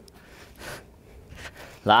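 A person breathing hard during a bodyweight exercise, with two short breaths, before a man's voice starts near the end.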